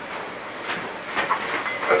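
Steady hiss of room noise with a few light rustles and clicks in the second half, and faint murmured voices shortly before a man starts speaking.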